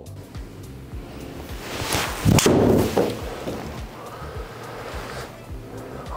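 TaylorMade Qi10 Max fairway wood striking a golf ball on a full swing: a rising swish, then one sharp crack of impact about two seconds in, with a brief ring after it. Background music plays throughout.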